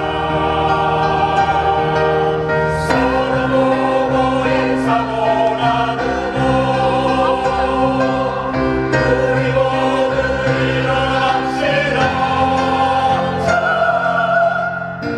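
Mixed choir of men's and women's voices singing in harmony, holding long chords that change about every few seconds.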